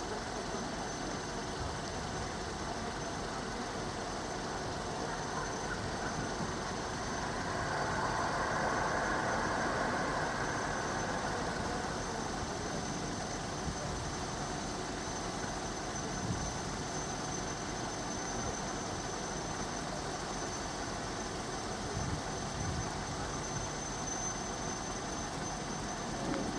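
A vehicle engine running steadily under outdoor background noise, growing louder for a few seconds about eight to eleven seconds in, with a faint steady high whine throughout.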